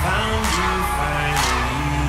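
Drumline music: marching snare and bass drums playing over a backing track with a held bass line and melody. Loud accented hits come about once a second.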